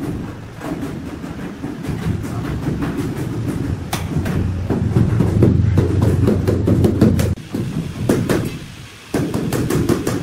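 Mallet knocking on large ceramic floor tiles to bed them into the mortar: a string of short knocks, more frequent in the second half, over a steady low rumble.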